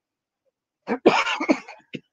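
A woman coughing into her hand, a short run of coughs starting about a second in, with one last brief cough near the end.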